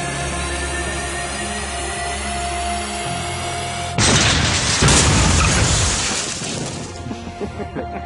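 Steady background music, then about halfway through a sudden loud crash of a head-on car collision between a 2013 Toyota Yaris and a heavier 1995 car. It is the loudest sound and dies away over two or three seconds.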